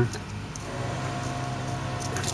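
Steady low mechanical hum. About half a second in, a steady drone with several overtones joins it.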